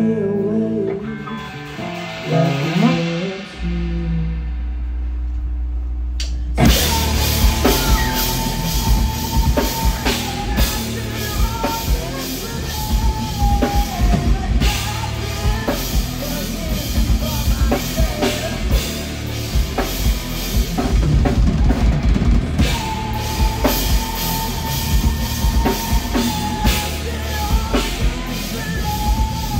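Live rock band on drum kit, electric guitar and bass guitar: a last sung word and ringing guitar notes die away, a low bass note comes in at about three and a half seconds, and the whole band with drums comes in at about six and a half seconds and plays on loudly.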